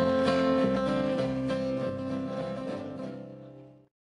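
Acoustic guitars play the closing strums of a country song, with no singing. The chord rings and fades over about three seconds, then the sound cuts off abruptly just before the end.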